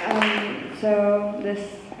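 The tail of an audience's applause dying away in the first half second, then a woman's voice starting to speak, with a drawn-out held syllable before the word "this".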